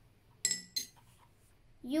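Metal teaspoon set down on a ceramic saucer, clinking twice in quick succession with a brief high ring.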